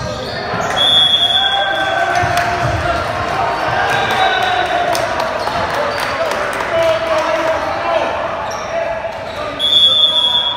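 A referee's whistle blows briefly about a second in and again near the end, the second signalling the next serve. Between them, players and spectators shout and cheer in an echoing gym, with scattered sharp knocks.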